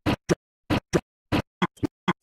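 A stutter edit: one tiny snippet of film audio chopped and repeated in short bursts with dead silence between, mostly in quick pairs, about seven in two seconds and coming faster near the end.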